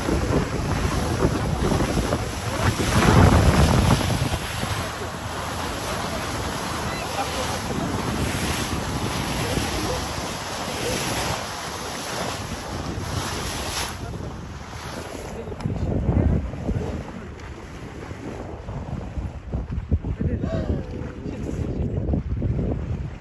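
Wind rushing over the microphone with sea water washing against a boat's hull on open water. There are louder gusts a few seconds in and again later.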